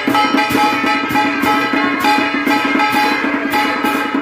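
Vietnamese traditional ritual ensemble playing live: plucked guitar and bowed two-string fiddle over a steady beat of drum strokes, about three a second.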